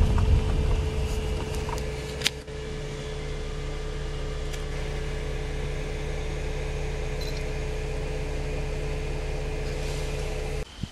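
A car's engine running steadily, heard as a low hum from inside the cabin with a faint held tone over it. The hum grows quieter over the first couple of seconds and then holds steady. A single sharp click comes a little over two seconds in.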